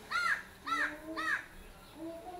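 A bird calling loudly three times, about half a second apart, each call rising and then falling in pitch.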